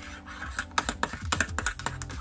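Metal teaspoon stirring coffee in a ceramic mug, clinking against the inside in quick, uneven ticks that come thicker in the second half.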